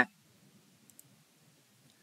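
Two faint clicks close together about a second in, over a low background hush: a computer mouse clicked to advance a presentation slide.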